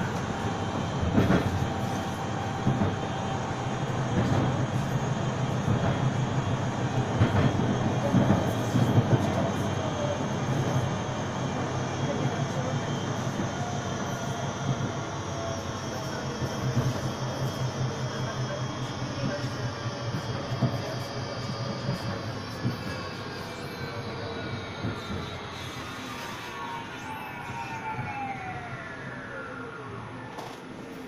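Electric tram running on its rails, heard from inside the car, with a whine from its electric motors and scattered knocks from the track. Over the last several seconds the whine's several tones fall steeply in pitch and the running noise fades as the tram slows down.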